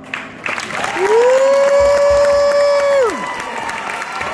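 Audience applauding in a large hall, with one voice giving a long high cheer that rises, holds for about two seconds and drops away.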